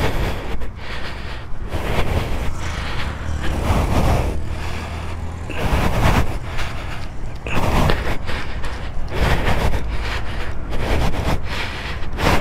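Wind buffeting the microphone and tyre noise from a motorcycle rolling along a road, gusting up and down, with no clear engine sound: the bike is out of fuel.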